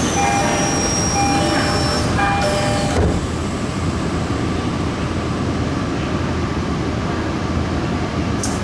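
Tokyo Metro 18000 series electric train running, heard inside the car as a steady low rumble. For the first three seconds a high whine drifting slightly downward and several short on-off tones sound over it, then they stop abruptly, leaving only the running rumble.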